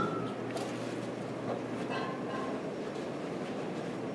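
Steady room noise in an occupied room, with faint distant voices briefly audible about two seconds in.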